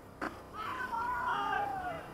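A single sharp pop, then a long drawn-out shouted call from a person at a baseball game, wavering and falling in pitch at the end.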